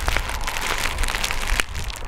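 Clear plastic bag crinkling as it is handled in the hands, a dense run of small crackles.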